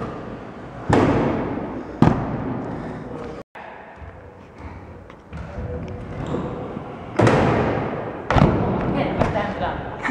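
Stunt scooter rolling and landing on a wooden bank ramp: four sharp thuds, two in the first couple of seconds and two near the end, each ringing out in the large hall.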